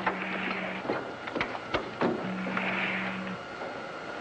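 Two steady, low electronic buzzes, each under a soft hiss: one at the start lasting under a second, the other about a second long after the midpoint. A few sharp clicks fall between them, like a 1950s sci-fi spaceship's control-panel sound effects.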